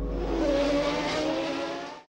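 Racing car engine sound: a pitched engine note sagging slightly in pitch over a high hiss, fading out near the end.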